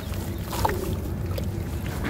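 Hands crumbling dry, dusty chunks into a plastic tub of water and sloshing and squeezing the wet slurry: steady watery splashing with small crackly clicks.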